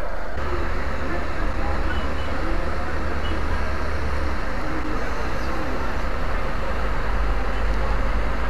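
Steady street traffic noise from the road below, a constant haze of passing cars and buses with a strong low rumble.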